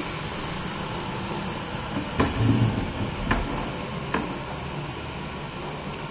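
Steady background hiss of room noise, with three brief clicks about two, three and four seconds in.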